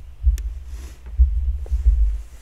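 Low, irregular thumping rumble, loudest about a second in and again near the end, with one sharp click near the start.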